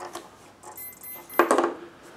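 Short high-pitched beeps from a brushless motor driven by its ESC, the warning beeps of an ESC that has not armed, with one sharp knock about one and a half seconds in as the receiver is set down.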